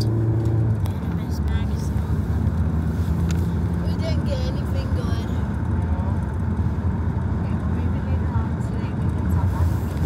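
Steady low rumble of a car, heard from inside the cabin, with brief voices now and then.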